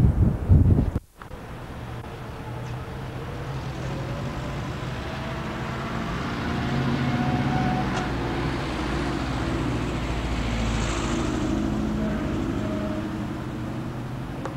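Street traffic with a motor vehicle's engine running steadily nearby. Wind rumbles on the microphone in the first second, followed by a brief drop-out in the sound.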